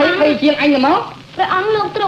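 A voice singing in the Khmer Lakhon Basak opera style, gliding between pitches and then holding long, wavering notes after a short break a little past a second in.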